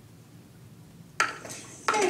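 Handheld microphone being picked up and handled: a sharp clatter about a second in that dies away, then a second knock near the end, over faint room hum.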